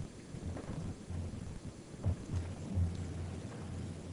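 Low rumble and hum of a meeting hall's microphone system, swelling and fading, with a few faint knocks and rustles.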